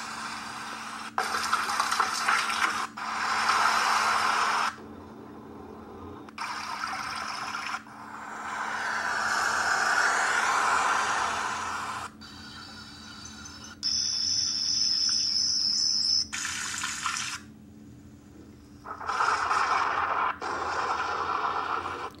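A string of short recorded nature sounds from a sleep app, played from a phone's speaker, each cut off abruptly after one to a few seconds as the next track starts: wind blowing through leaves, rushing water, and ocean surf swelling and falling back. One short clip a little past the middle carries a steady high whistling tone.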